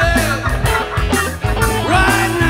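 Live rock band playing, with drums, bass and guitars.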